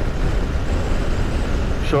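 Steady riding noise from a 2016 BMW R1200RS motorcycle at road speed: a rush of wind over a low rumble of engine and tyres.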